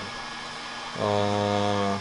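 A man's drawn-out filled pause, a steady hummed 'ehh' held at one pitch for about a second, starting about a second in. Before it, only faint room noise.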